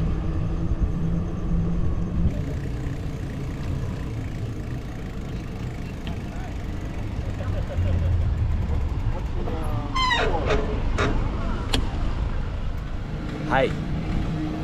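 Wind rumble and road noise on a camera carried on a moving bicycle. A motor vehicle's engine hums in the first couple of seconds, and brief voices come in about ten seconds in and again near the end.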